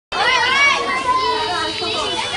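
A group of school children shouting excitedly together, their high voices overlapping, with drawn-out calls held through the second half.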